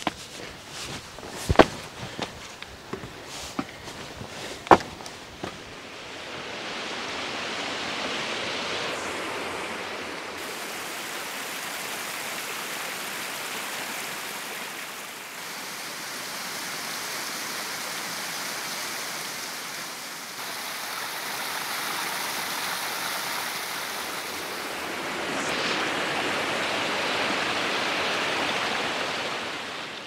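Footsteps with two sharp knocks in the first five seconds, then the steady rushing of a fast-flowing mountain waterfall cascading over rock. The rushing shifts slightly in tone a few times.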